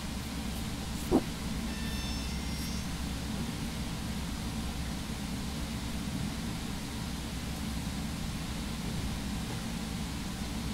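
Steady low background hum and hiss of room noise, with one short rising chirp about a second in.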